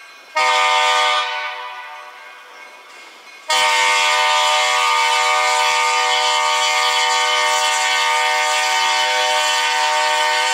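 Freight locomotive's multi-chime air horn sounding for the road crossing ahead: a short blast about half a second in that dies away over a couple of seconds, then a long steady blast from about three and a half seconds in, still sounding at the end.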